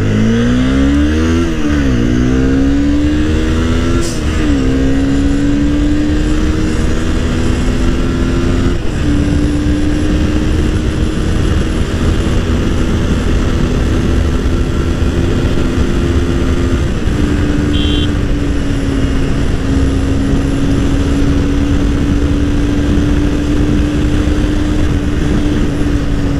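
Honda CBR250R's single-cylinder engine accelerating hard through the gears. The revs climb and drop back at upshifts about two and four seconds in, then the engine pulls on at a nearly steady high pitch at speed, with heavy wind rush on the microphone.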